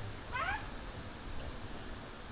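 A single short high-pitched cry, rising and then falling in pitch, about half a second in.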